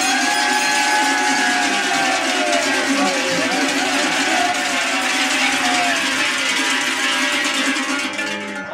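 Large hand-held bells shaken in a continuous dense jangle, with long drawn-out shouts over them: the noisy chorus of a Romanian New Year's urătură that follows each recited verse.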